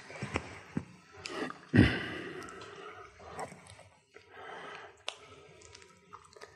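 Faint handling noises from marker and flip chart: a few small clicks and some rustling, with one louder dull thump about two seconds in.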